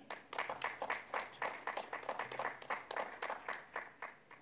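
Audience applauding: a scattered patter of many irregular hand claps that stops near the end.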